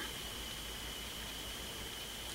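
Steady background hiss and low hum with a faint constant high-pitched whine running through it; no distinct sounds.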